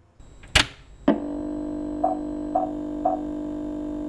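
A steady electronic drone of several tones, with three short higher beeps about half a second apart. It starts and stops with sharp clicks.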